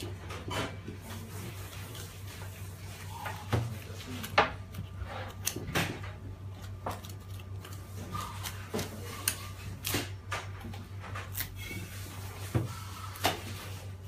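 Boning knife cutting and scraping around the hip bone of a leg of lamb on a wooden butcher's block, with scattered clicks and knocks of the blade, bone and meat against the block, over a steady low hum.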